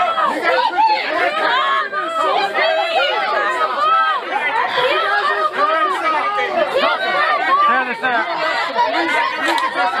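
Many voices talking over one another in a dense, continuous chatter, with no single voice standing out.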